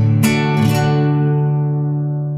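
Acoustic guitar strumming the closing chord of a folk song: a last strum just after the start, then the chord rings on and slowly fades.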